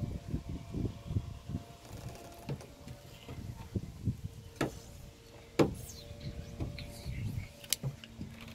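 Irregular low rumble of wind on the microphone, with a few sharp clicks or knocks about halfway through and near the end.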